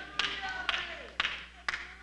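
Sharp single claps in a steady beat, about two a second, ringing in a large church hall, with faint voices under them.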